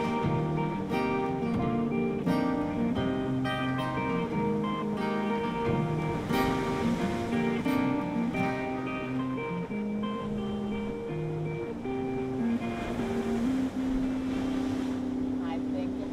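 Instrumental outro of an acoustic pop song: acoustic and electric guitars strumming chords. The final chord is held and rings on through the last few seconds.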